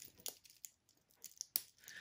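Faint, scattered clicks and clinks of a metal clip and key ring being handled as a leather tab is hooked onto it, the clearest click about a second and a half in.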